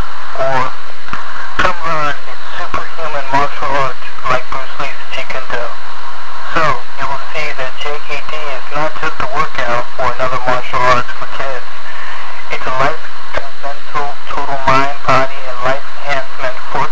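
Continuous talking, loud and lo-fi like a radio broadcast, its words too unclear to make out.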